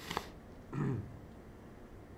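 A man's quick breath, then one short wordless grunt-like murmur about a second in, over faint room hiss.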